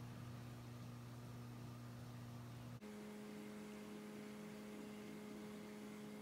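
Faint steady background hum with no other sounds. About three seconds in it breaks off briefly and a slightly higher-pitched hum takes over.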